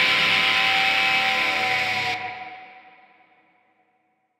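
The last chord of a rock song ringing out on distorted electric guitar through echo. Its bright top cuts off about two seconds in, and the rest fades away within another second.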